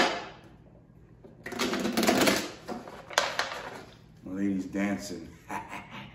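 Tarot deck being shuffled by hand: a sharp snap at the start, a dense riffling burst about a second and a half in, and a sharp click just after. A few short wordless vocal sounds from the man follow near the end.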